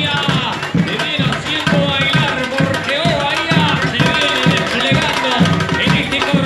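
Carnival comparsa music: a drum section keeps a steady beat, with deep bass-drum strokes about twice a second, under a singing voice.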